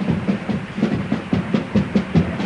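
Carnival group's bass drum and snare drum playing a quick, even rhythm, about four or five strokes a second.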